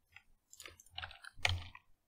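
Computer keyboard typing: a few soft, irregular key clicks, the loudest about a second and a half in.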